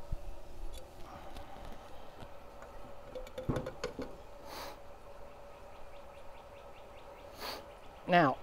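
Faint knocks and clicks as a metal gas meter is handled and tipped over a steel coffee can, with a sharper knock about three and a half seconds in, under a faint steady hum.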